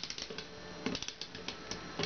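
Spring mechanism of a cast-iron Professor Pug Frog's Great Bicycle Feat mechanical bank being wound by hand, clicking in a few short runs.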